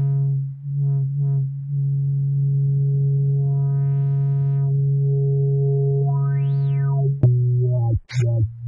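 Korg NTS-1 synthesizer holding a low note, retriggered a few times early, while its low-pass filter is opened and closed so the tone brightens and darkens twice, the second time in a quick rise and fall. Near the end the note steps down to a lower pitch.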